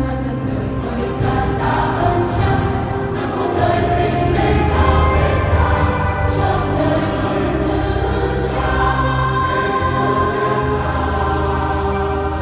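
A large church choir of mostly young women's voices singing a Vietnamese Catholic hymn in harmony, with electronic keyboard accompaniment. The notes are long and drawn out, especially in the second half.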